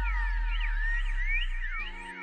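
Background music: an electronic track with gliding synth sweeps over a steady high tone and a held bass note that fades out near the end.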